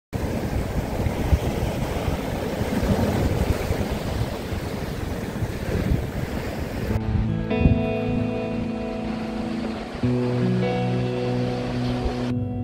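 Ocean surf washing onto a sandy beach, a steady rushing of breaking waves for about seven seconds, then it cuts off suddenly and background music with long held chords takes over, shifting chord about three seconds later.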